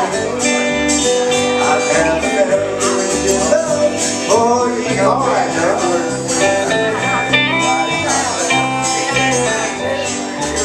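Live country band playing an instrumental passage: electric and acoustic guitars over a bass guitar and drum kit.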